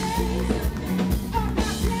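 Live band playing an upbeat number, with drums and bass under lead and backing vocals.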